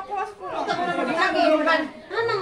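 A group of people's voices: the last word of a chanted, repeated line, then several people talking over one another.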